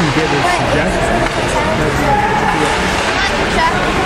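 Indistinct chatter of several spectators talking at once over the background din of an ice-rink arena.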